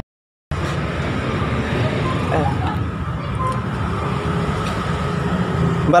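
Half a second of silence, then steady road traffic noise from the street outside, with a brief spoken interjection about two seconds in.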